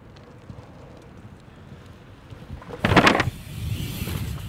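Low outdoor background noise, then about three seconds in a short, loud rush as a mountain bike speeds up the folding kicker ramp close to the microphone and takes off.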